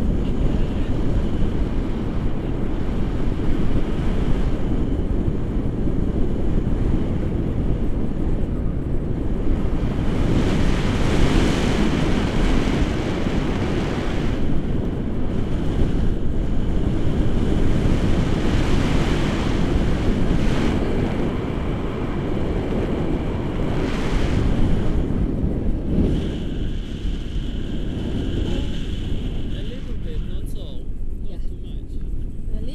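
Steady wind rushing and buffeting over a camera microphone in flight under a tandem paraglider, a loud low rumble that swells and eases without stopping.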